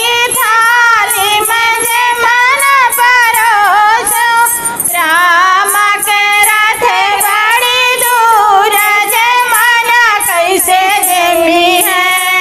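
Two women singing a Hindi devotional folk song (a Ram bhajan) together, in a wavering, ornamented melody over a regular percussive beat.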